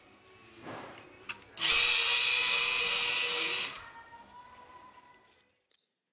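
Tetrix DC gear motors whining as they drive the robot's wheels at two different powers, so the robot turns. The run lasts about two seconds and then cuts off sharply. A click comes just before the motors start.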